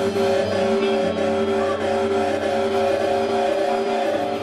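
Loud live drone from electric guitar and effects pedals: several held tones sound together and stay steady throughout, with no beat.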